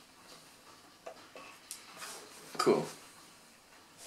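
Small clicks and taps of metal needle-nose pliers working a guitar's switch and handling the wooden body, with a short louder sound about two and a half seconds in.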